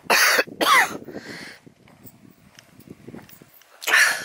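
A woman coughing hard twice, to clear pollen or bracken she has inhaled into her throat.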